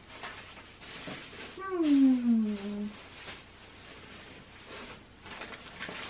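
A domestic cat giving one drawn-out meow that falls in pitch, about a second and a half in, amid faint rustling and knocking.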